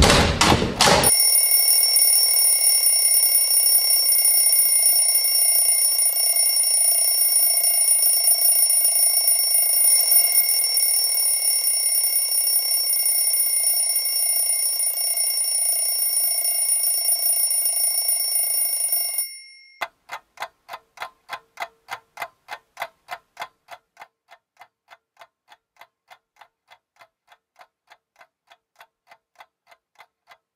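A mechanical alarm clock's bell ringing loud and high-pitched from about a second in, cutting off suddenly about two-thirds of the way through. The clock's ticking follows, a few even ticks a second, growing fainter.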